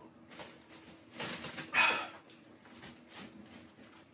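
Breathy huffs and exhales from men taking a sip of straight whiskey, the loudest a short rush of breath between one and two seconds in.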